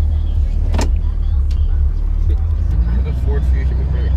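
Steady low rumble of a truck's engine and road noise heard from inside the cab as it drives slowly, with a single sharp click about a second in.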